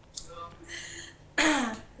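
A person clearing their throat once, loudly, about a second and a half in, after a few faint short sounds.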